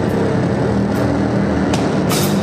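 Live sludge/noise band playing a slow section: a loud, heavily distorted bass drone with three sharp drum or cymbal hits under a second apart.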